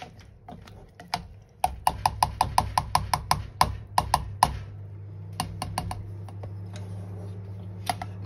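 Black plastic spoon knocking against a stainless steel saucepan while stirring beans: a quick run of clicks, about five a second, from a couple of seconds in, then a few scattered taps, over a low steady hum.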